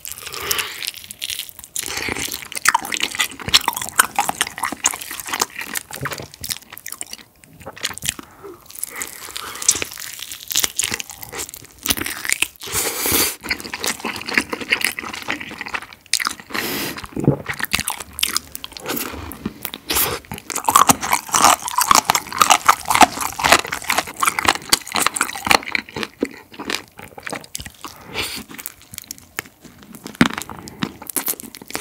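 Close-miked biting and chewing of a Korean yangnyeom fried chicken drumstick: the thin batter coated in sticky sauce crunches and crackles with each bite, mixed with wet chewing, broken by a couple of brief pauses.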